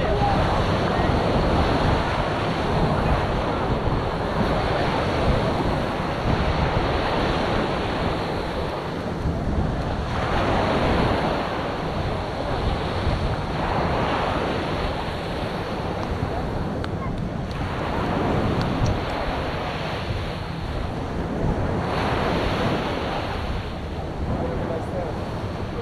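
Wind buffeting the microphone over a steady rush of surf, swelling and easing every few seconds.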